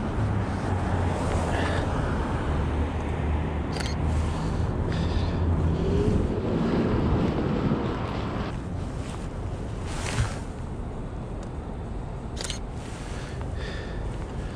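City street traffic noise with a steady low engine hum that fades about eight seconds in, heard while walking, with a few short sharp clicks.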